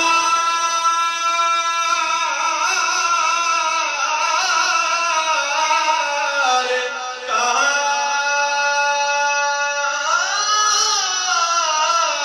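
A man singing a naat, devotional verse in praise of the Prophet, solo through a microphone and loudspeakers. He draws the notes out long and wavering, with a short break about seven seconds in and a rising and falling run near the end.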